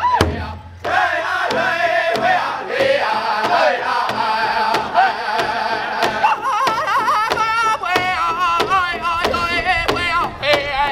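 Powwow drum group singing a double-beat contest song: many voices singing high and full over a large bass drum struck in unison by several drumsticks. The singing and drumming dip briefly just after the start, then come back strong.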